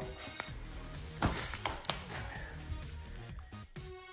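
Background music playing, with a few light clicks and knocks scattered through it, mostly in the first two seconds.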